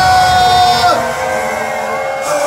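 Live pop music over a stage PA: a voice holds a long note that slides down about a second in, while the low beat fades away.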